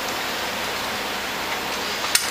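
Steady hiss of background noise with a faint low hum underneath, even throughout, with no distinct clicks or knocks.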